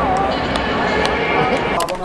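Indistinct voices over a steady, dense hubbub, with no single clear speaker until a man's voice right at the end.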